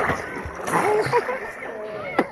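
Water splashing around a rafting boat, with people's voices over it and a sharp knock about two-thirds of a second in.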